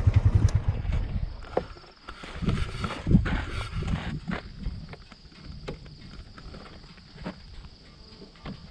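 ATV engine running with a steady low pulsing beat that fades away about a second and a half in. After it come scattered short knocks and rustles.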